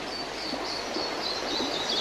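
A small bird chirping a quick run of short high notes, about four or five a second, over a steady background hiss of outdoor ambience.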